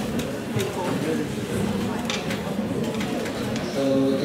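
Indistinct murmuring of many audience voices in a hall, with no single clear speaker.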